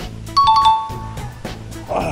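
A two-note ding-dong chime sound effect, the signal that an on-screen countdown timer has run out. It starts about a third of a second in and fades out after about a second, over steady background music.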